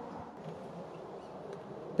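Faint, steady background noise with no distinct events: a low hiss-like hum in a pause between words.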